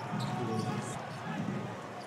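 Basketball arena game sound: a basketball bouncing on the hardwood court under the steady murmur of the crowd, fading slightly toward the end.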